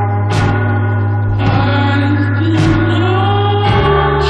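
Music from a recorded song: sustained, choir-like chords over a held bass note, with the harmony shifting about halfway through and again near the end.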